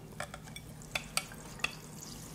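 A plastic pen-type pH meter stirring a solution in a drinking glass, its tip clicking against the glass about five times.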